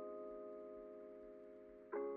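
Quiet background music: a held chord slowly fading, then a new chord struck near the end.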